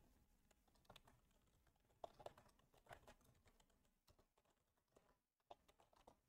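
Faint computer keyboard keystrokes, a scattered handful of clicks in small clusters with pauses between them, over near silence.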